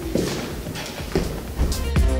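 A woman's brief laugh, then background music with a steady beat comes in near the end.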